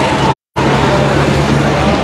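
Loud, steady outdoor noise with a low steady hum, broken by a short gap of dead silence about a third of a second in.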